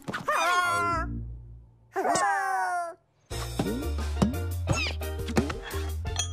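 Two short, wavering, animal-like vocal cries from a cartoon character, each under a second, the second sliding down in pitch. After a brief silence, background music with a steady bass line comes in about three seconds in.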